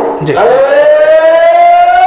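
A man's voice holding one long chanted note, rising slowly in pitch, in the sung delivery of a Bengali waz sermon.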